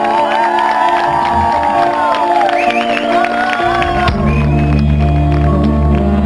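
Rock band playing live through a PA: held electric guitar notes with a lead line that bends and wavers, then low bass notes come in heavily a little past the middle.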